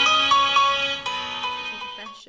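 Background music: a melody of held, pitched notes that fades out over the second half.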